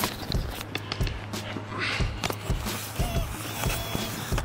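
Footsteps and camera-handling knocks, a soft irregular series of thuds, over a steady low electrical hum.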